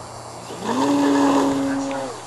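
Electric RC aerobatic plane's brushless motor and propeller (Hyperion Z4020-14B) throttling up: a steady note rises in pitch about half a second in, holds level for over a second, then drops near the end as power comes off.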